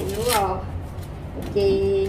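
Dry, papery rustling and tearing of green corn husks being stripped from fresh ears by hand and with a cleaver, under talk.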